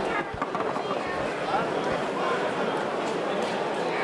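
Indistinct voices of people talking, with a few short low thuds in the first two seconds.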